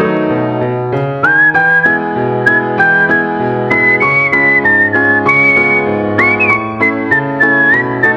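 Background music: a whistled tune that slides up into its notes, over a steady keyboard accompaniment with a bass line.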